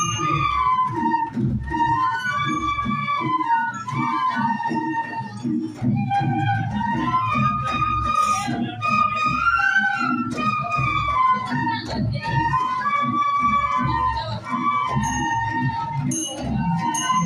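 A group of bamboo flutes (bansuri) playing a melody in unison, the tune rising and falling in repeated phrases.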